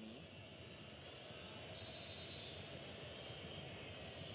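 Steady, even stadium crowd noise, with no single cheer or chant standing out.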